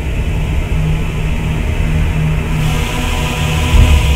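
Soundtrack music over a deep, loud rumble: the engine sound effect of a Dalek saucer passing overhead. A hiss swells in about two and a half seconds in.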